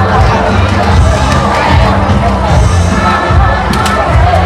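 A large outdoor crowd cheering and shouting over loud music with a heavy bass line.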